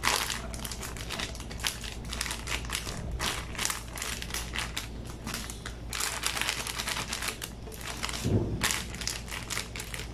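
Thin plastic bag crinkling and rustling in the hands as flour is poured from it into a clear plastic storage canister, with one dull thump a little after eight seconds in.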